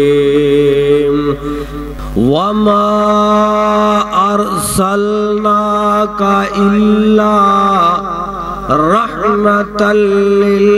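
A man reciting the Qur'an in a slow, melodic chant, holding long notes and ornamenting them with short sliding turns; the voice steps up into a higher phrase about two seconds in and again near the end.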